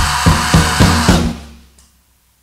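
Closing bars of a rock band's song: the drum kit hits a run of accented beats about three a second under cymbals and bass. The hits stop and the sound dies away to silence by about a second and a half in.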